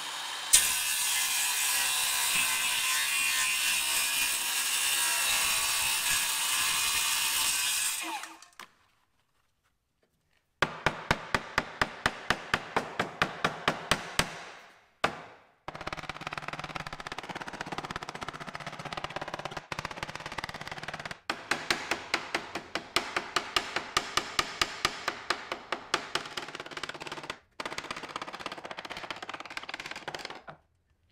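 Cordless circular saw cutting through a plexiglass sheet, running steadily for about eight seconds. After a pause, a small hammer taps rapidly on gasket sheet laid over the plate, about five light blows a second in several runs, cutting out a gasket.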